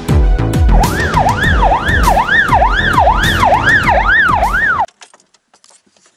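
A fast police-style siren wail, rising and falling about twice a second, laid over intro music with a heavy bass beat; both cut off abruptly just before five seconds in, leaving near silence.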